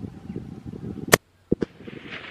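A single sharp crack about a second in, after which the sound cuts out abruptly for a moment, then two faint clicks.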